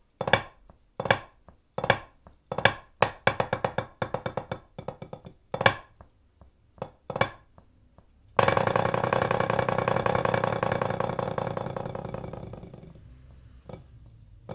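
White hickory parade drumsticks playing a rudimental snare drum solo on a rubber practice pad: groups of quick, sharp strokes, then a little over eight seconds in a loud sustained roll that fades away over about four seconds, followed by a few single taps.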